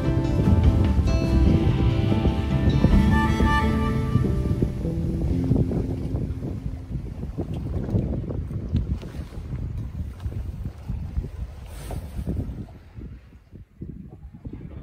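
Soft instrumental background music that fades out about halfway through. It gives way to wind buffeting the microphone and the wash of the sea aboard a sailboat under way, growing quieter near the end.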